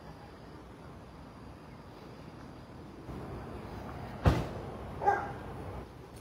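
A dog barks twice, about a second apart, over a steady background of outdoor street noise. The first bark is the louder and sharper of the two.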